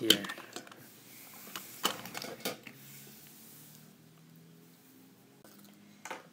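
Light clicks and clacks of die-cast metal toy engines being set down and knocked together on a table, three or so in the first two and a half seconds. After that only a faint low hum remains.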